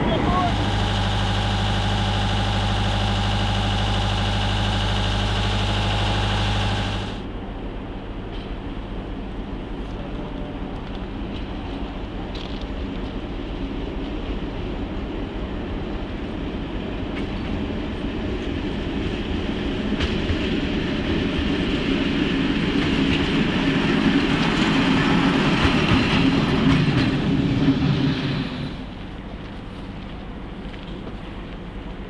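Ex-ČD class 478 'Goggle' diesel locomotive 468 001 idling steadily close by, a loud, even engine note. About seven seconds in it gives way abruptly to the same locomotive running light through a yard, its engine sound growing louder as it approaches, until it cuts off shortly before the end.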